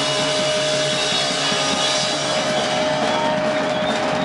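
Live electric blues-rock band playing loudly: a long held electric guitar note rings steadily over a repeating bass and guitar riff. Drum and cymbal hits come in near the end.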